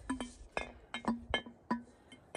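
A wooden stomper knocking against the inside of a glass mason jar: about six light clinks, several followed by a short ringing from the glass.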